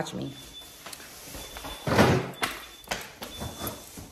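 A kitchen garbage can being bumped into: one loud, rustling knock about two seconds in, then a few light knocks and clicks.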